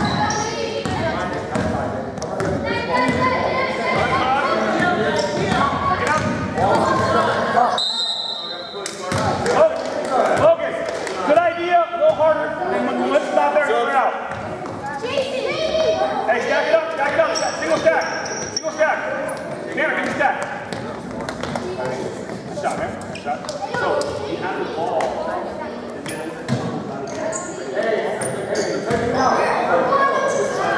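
A basketball bouncing on a hardwood gym floor amid the voices of players and spectators, echoing in a large hall. A short, high whistle blast comes about eight seconds in.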